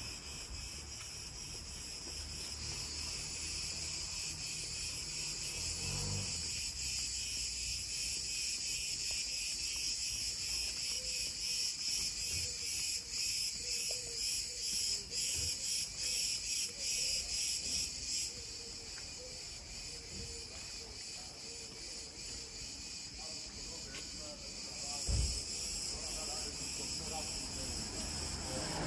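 Cicadas singing, a steady high buzz that turns louder and rapidly pulsing for several seconds in the middle, then drops back. One dull low thump near the end.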